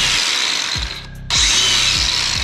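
DeWalt 20V brushless angle grinder driving a belt sander attachment, running with no workpiece, the belt spinning with a steady high whine. It cuts out about a second in, then starts up again.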